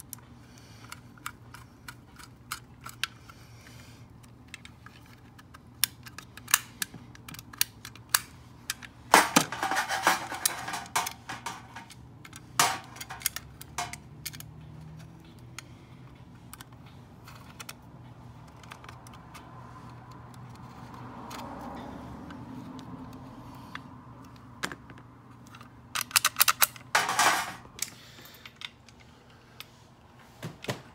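Screwdriver tightening the cover screws on an antique double bit mortise lock: scattered small metal clicks and scrapes, with denser bursts of clicking and rattling about nine seconds in and again near the end, over a steady low hum.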